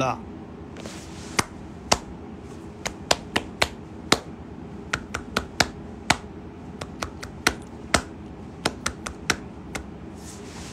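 Hands working close to a phone's microphone: a run of sharp, irregular clicks and taps, about two or three a second, starting about a second in.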